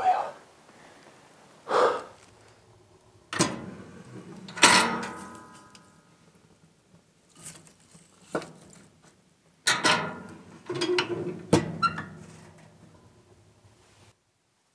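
Knocks and clunks of firewood being loaded into a small wood stove, with its metal door clanking; one knock about five seconds in leaves a short metallic ring, and a cluster of clattering knocks comes near the end.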